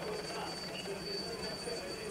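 Steady engine drone from the race's vehicles or the filming helicopter, with a thin steady high-pitched whine and faint voices underneath.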